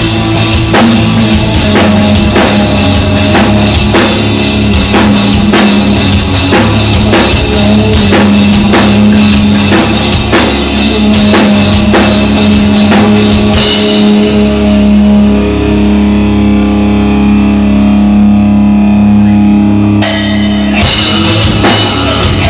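Live rock jam: electric guitar played over a full drum kit with a steady beat. About two-thirds of the way through the drums drop out and held notes ring on alone for several seconds, then the drums come back in with a cymbal crash near the end.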